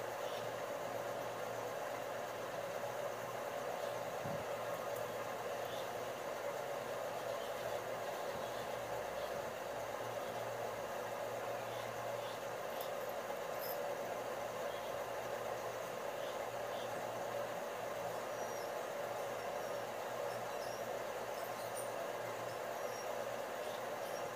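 Steady background hum and hiss with no change, with a few faint, scattered high ticks.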